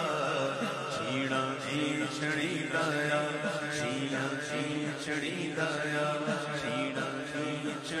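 Unaccompanied Punjabi naat: a lead male voice sings a drawn-out melody into a microphone over a group of men chanting a repetitive zikr drone.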